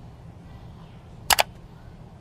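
Two sharp clicks in quick succession a little over a second in, over a low steady room hum.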